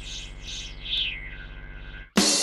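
Electronic synthesizer drone: a steady low hum under pulsing high tones that slide down in pitch, used as a transition sound.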